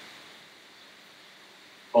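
Faint steady hiss of background noise with no distinct sound in it.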